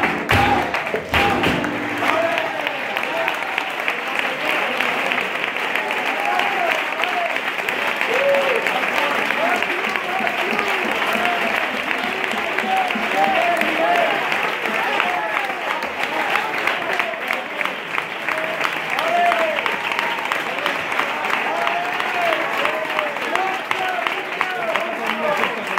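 A flamenco guitar and hand-clapping palmas end about a second and a half in. Sustained audience applause follows, with shouts and cheers rising above it.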